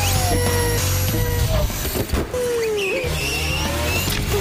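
Radio-control cars racing: a whine that rises and falls in pitch as they speed up and slow, with tyre squeal, over a steady music bed.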